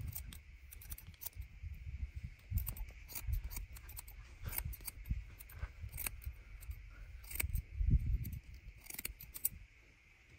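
Steel barber's scissors snipping hair over a plastic comb in quick, irregular snips. There are low rumbles near the start and again about eight seconds in, and a faint steady high hiss underneath.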